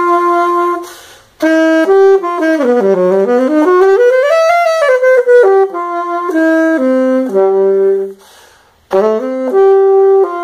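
An unaccompanied saxophone playing a melody one note at a time. In the middle the pitch swoops down and climbs back up. The line stops twice briefly, about a second in and near the end.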